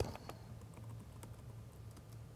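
Faint typing on a computer keyboard: a few scattered, irregular key clicks as a short word is typed.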